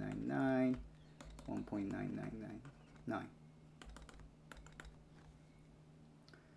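Stylus tapping on a pen tablet while handwriting, sharp clicks as dots are tapped out: a quick run about three seconds in, then a few more spaced out. A steady low hum sits beneath.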